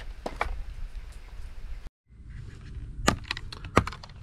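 Cardboard and paper packaging being handled, with a couple of light clicks; then, after a brief dropout, a quick series of sharp plastic clicks as the closed plastic trail camera case and its latches are handled.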